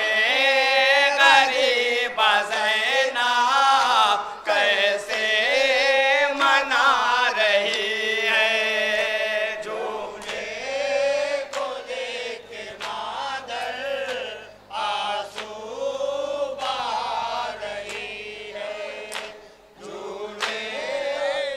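A group of men chanting a noha, a Shia lament, at the microphone, the voices wavering and sliding in pitch. It is loudest for the first half and softer after that, with short breaks between lines.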